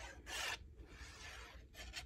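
Faint scraping and rubbing of a fine-tip liquid glue bottle and fingers against cardstock, with a brief louder scrape about a quarter of a second in.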